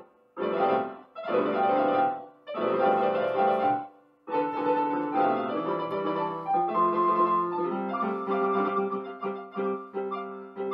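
Solo piano sound from a digital keyboard playing an improvised fantasia on a minuet theme. It starts in short phrases of chords with brief pauses between them; from about four seconds in it turns into a continuous flowing passage over held notes.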